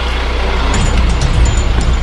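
Fire engine's engine idling in a steady low rumble, under the hiss of falling rain, with a few light knocks in the second half.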